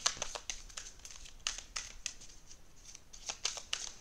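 A deck of oracle cards being shuffled in the hands: a quiet, irregular run of light card clicks and flicks.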